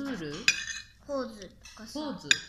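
Metal spoon and fork clinking against a ceramic plate, with one sharp, ringing clink about a quarter of the way in. Short bits of a voice come between the clinks.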